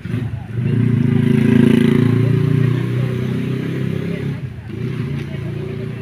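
A motorcycle engine passing close by, swelling to its loudest about a second and a half in and fading by about four seconds, heard over people's voices.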